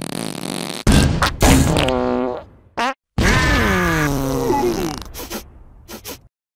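Cartoon fart sound effects: two short sharp blasts about a second in, a brief squeal that falls in pitch, then a long loud blast a little after three seconds that sags downward in pitch.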